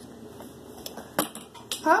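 A plastic measuring spoon tapping and clicking several times while scooping cornstarch, with the sharpest knock just over a second in. A short spoken "Huh?" comes at the end.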